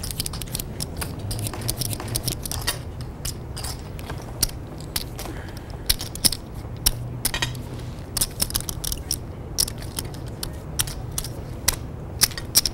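Poker chips being handled at the table, giving scattered, irregular sharp clicks and clacks over a low steady hum.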